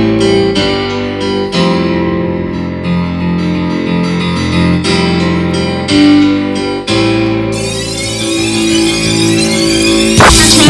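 A song's instrumental intro on keyboard: piano-like chords struck one after another and held, with a rising sweep building over the last couple of seconds before the vocal comes in.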